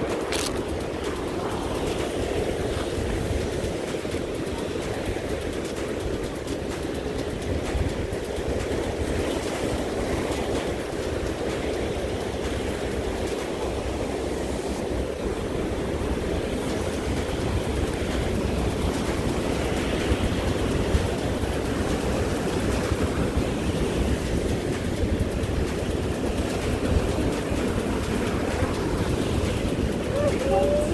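Steady rush of surf breaking and washing against granite jetty rocks, with wind rumbling on the microphone.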